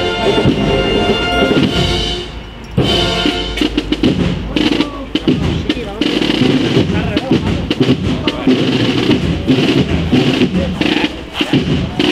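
Spanish processional brass band music with drums. Held chords break off about two and a half seconds in, and a denser mix of drums, sharp strokes and voices follows.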